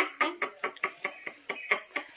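A woman laughing softly in quick, breathy bursts, about six or seven short strokes a second.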